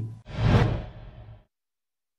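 Whoosh transition sound effect for an on-screen graphic: a rushing swell that rises quickly, then fades away over about a second, followed by dead silence.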